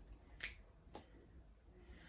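Two faint, sharp clicks about half a second apart, from a mascara wand being worked in its tube.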